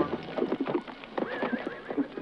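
A horse neighing over the clatter of its hooves as it is ridden up and reared back, with a held high call a little over a second in.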